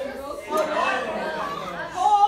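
Chatter of several young voices talking and calling out at once in a classroom.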